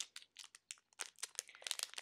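Packaging crinkling as it is handled and opened: a quick, irregular run of small crackles.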